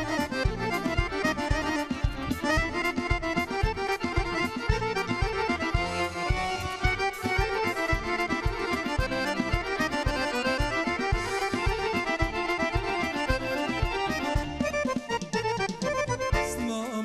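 A live Serbian folk band playing an instrumental passage, accordion leading the melody over keyboard and a steady, even drum beat.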